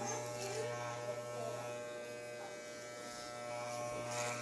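Electric hair clippers running with a steady buzz as they cut through a man's hair.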